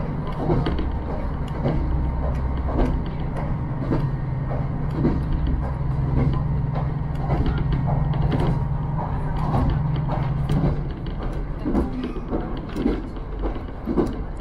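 Inside a KiHa 54 diesel railcar on the move: the diesel engine's steady low drone, with frequent irregular creaks, knocks and rattles from the carriage. The engine drone drops away about eleven seconds in.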